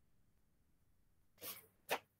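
Near silence, then near the end a faint short breath intake followed by a brief mouth click, just before speech resumes.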